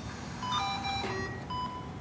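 Operating-room patient monitor beeping about once a second, a short steady pulse tone, with soft background music under it.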